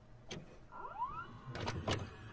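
A VCR's tape-loading mechanism working after play is pressed: sharp mechanical clicks and clunks, with a small motor whine that rises quickly in pitch about a second in.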